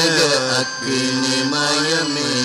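A man's voice chanting a devotional hymn into a microphone, the melody gliding up and down with a short breath a little past halfway, over steady sustained instrumental accompaniment.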